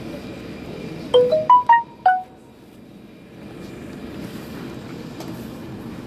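A five-note electronic chime of the kind a public-address system sounds before an announcement. It is a quick rising-then-falling run of clear notes lasting about a second, starting about a second in, over a steady background hum.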